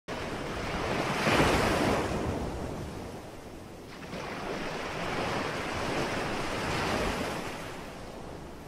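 Ocean surf: waves breaking and washing up onto a beach. It swells loudest about a second and a half in, eases, then builds again near the end.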